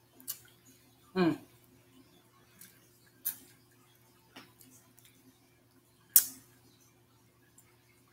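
Wet mouth smacks and sucking clicks of someone eating meat off a neck bone with her fingers: a handful of short, sharp smacks spread a second or more apart, the loudest about six seconds in. A short hummed 'mm' that falls in pitch comes about a second in.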